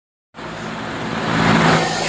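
Steady rushing background noise with a low hum, starting suddenly and swelling over the first second and a half.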